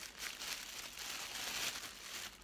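Thin clear plastic bag crinkling steadily as a small travel iron is slid out of it by hand.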